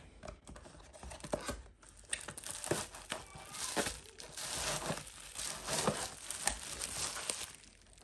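Cardboard box and plastic bubble-wrap packaging being handled during an unboxing: irregular rustling and crinkling with small scrapes and taps.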